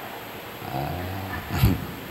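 A man's low chuckle, ending in a short breathy burst of laughter about one and a half seconds in.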